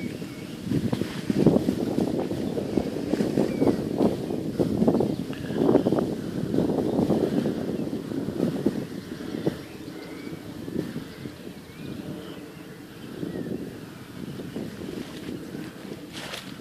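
Wind buffeting the microphone in gusts, a low rumble that is stronger in the first half and eases after about eight seconds.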